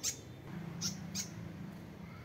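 Fantail calls: three short, high-pitched chirps. The first comes right at the start, and the other two follow close together about a second in.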